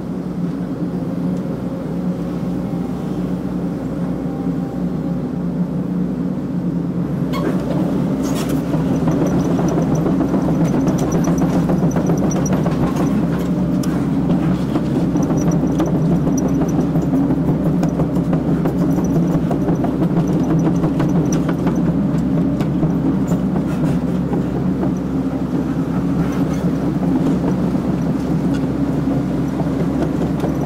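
Excavator diesel engine and hydraulics running steadily, heard from inside the cab, getting louder from about eight seconds in as the machine works, with a couple of sharp knocks around then.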